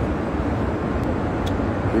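Steady low rumble of cabin noise inside a private jet, even and unbroken, with a couple of faint clicks about a second in.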